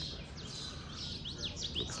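Small birds chirping: a quick series of short, high chirps, busiest in the second half.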